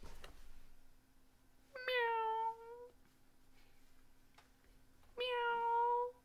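A cat meowing twice, about three seconds apart. The two meows match in shape and length, each just under a second: a recorded meow played by a live-stream super-sticker alert.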